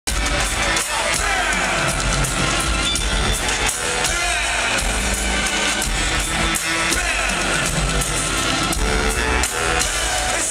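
Live hip-hop band music played loud over an arena PA, with heavy bass, heard from among the audience.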